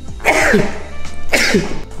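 A man sneezing twice, about a second apart, from an allergy, over background music.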